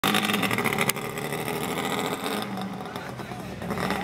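Suzuki GT380's two-stroke three-cylinder engine running as the motorcycle rides off, loudest in the first second, with a sharp click about a second in. The sound then fades from about two and a half seconds in as the bike moves away.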